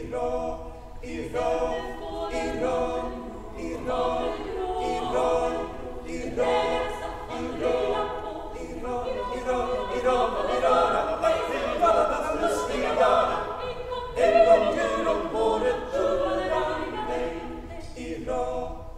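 A girls' choir singing unaccompanied, several voices in harmony, in phrases that swell and ease every second or two.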